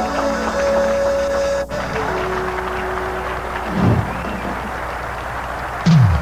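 A band playing live, led by synthesizer keyboards: long held synth notes, then a noisy wash, with a low note sliding down in pitch about four seconds in and again at the end.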